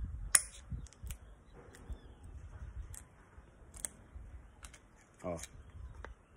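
Small clicks from a fuel pressure regulator's retaining clip being worked free on a fuel-injection rail. One sharp click comes about a third of a second in, followed by fainter scattered ticks of metal and plastic.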